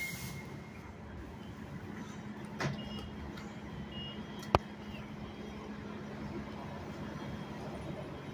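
City transit bus idling at the curb with a steady low engine hum, with a few faint short beeps and a single sharp click about four and a half seconds in.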